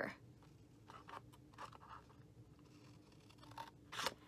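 Small scissors snipping designer-series paper: a few faint, short cuts about a second in and again near the end, with quiet between.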